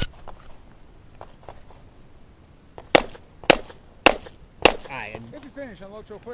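Four pistol shots from a Springfield XD(M) competition pistol, evenly spaced about half a second apart, starting about three seconds in.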